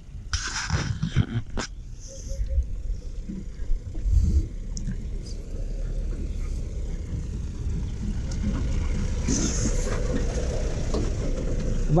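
A pickup truck's engine running as the truck drives slowly up a dirt track, growing steadily louder as it draws near and pulls alongside.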